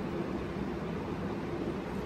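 Steady room noise: an even low hum and hiss with no distinct events.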